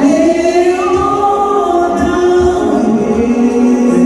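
Gospel choir singing into microphones over a live band, the voices holding long notes that glide between pitches, with a low beat underneath.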